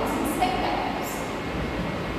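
Steady rumbling background noise with hiss in a pause of a woman's speech, with a faint, brief trace of her voice about half a second in.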